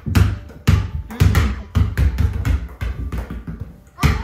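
Rubber basketballs bouncing on a wooden floor as children dribble, an uneven run of thuds about two a second.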